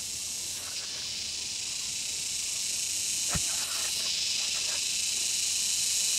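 A steady high-pitched insect drone, slowly growing louder, with a single sharp knock about halfway through as the upright wooden pole strikes the ground.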